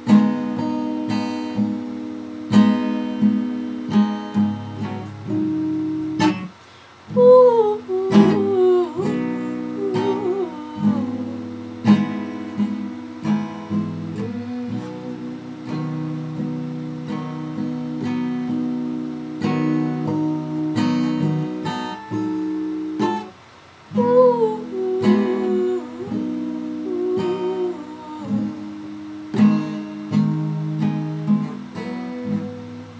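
Steel-string acoustic guitar strummed in steady chords, breaking off briefly twice. After each break a voice carries a wordless melody over the guitar, about seven seconds in and again near twenty-four seconds.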